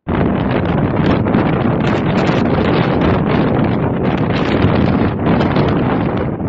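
Strong wind buffeting the microphone: a loud, continuous, gusting rush of noise.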